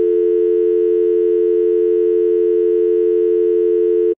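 Telephone dial tone: two steady tones sounding together, held loud and unbroken.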